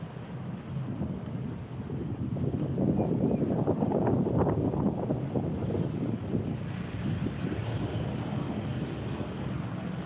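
Street traffic: vehicle engines and tyres going past, with wind buffeting the phone microphone. The sound swells in the middle as a pickup truck passes close by, then eases.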